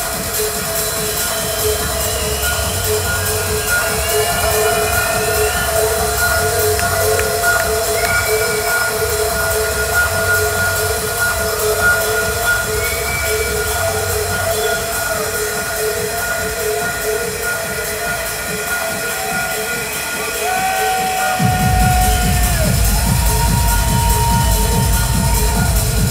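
Techno DJ set played loud over a club sound system. It has held synth tones, a note pulsing about twice a second and sliding high tones over a bass line. The bass drops out for several seconds, then comes back louder about 21 seconds in.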